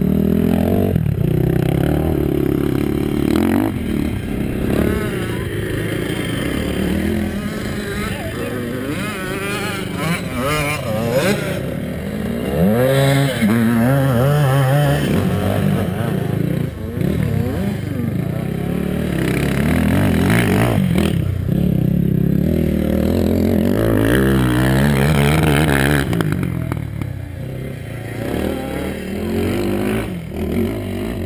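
ATV and dirt bike engines running, with revs rising and falling several times, most strongly around the middle of the stretch.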